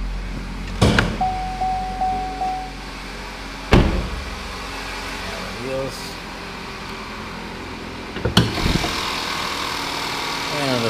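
Car door opening with a click, then a short steady warning chime, and the door slamming shut a couple of seconds later. Near the end a clunk as the hood is raised, after which the engine runs louder and steady.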